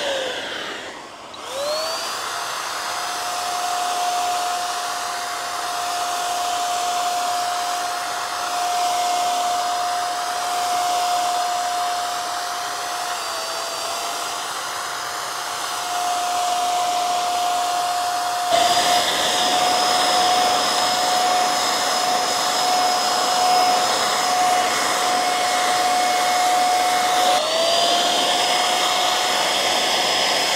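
Asian Paints TruCare handheld electric paint sprayer running as it sprays paint: a steady high motor whine over the hiss of the spray. About a second in it briefly winds down and spins back up, and near the end it spins up again.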